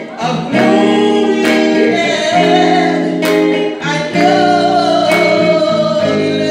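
A woman singing a gospel worship song into a microphone, holding long notes, over instrumental accompaniment.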